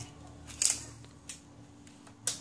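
A retractable tape measure being pulled out and laid across a picture frame: a short rasp about half a second in, then a couple of faint clicks.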